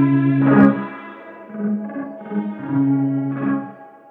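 Outro music with sustained, effects-laden electric guitar notes and a sharp hit about half a second in, fading out near the end.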